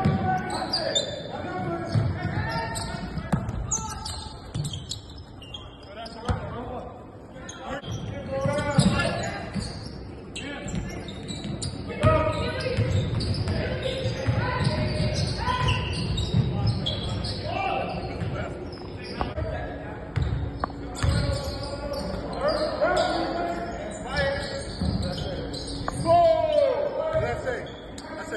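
A basketball bouncing on a hardwood gym floor during play, with players and onlookers calling out, all echoing in a large gymnasium.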